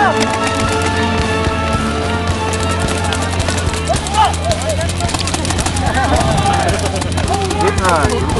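Paintball markers firing in rapid, overlapping volleys, the shots getting denser about two and a half seconds in. Players shout over the firing.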